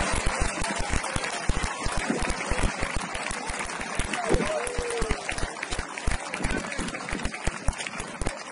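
Players' voices shouting and cheering across an open pitch, with one loud rising-and-falling whoop about four seconds in, over constant wind buffeting the camera's microphone.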